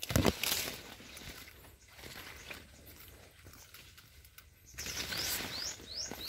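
Footsteps and rustling on dry, cracked mud in the first second, then faint outdoor ambience, and a bird chirping several short high notes near the end.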